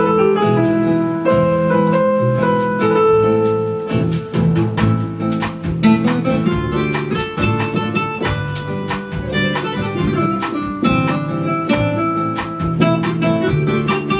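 Korg Havian 30 digital piano playing a bossa nova: a run of melody notes over a plucked, guitar-like accompaniment, with a light, steady percussion beat.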